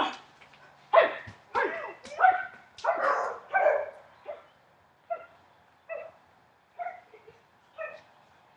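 A dog barking repeatedly: a run of loud barks in the first half, then four shorter barks about a second apart.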